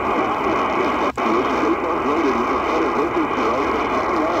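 AM broadcast speech through a Qodosen DX-286 portable radio's small speaker, thin and mixed with static. It cuts out sharply for an instant about a second in as the radio steps from 810 to 820 kHz, then another station's talk and static carry on.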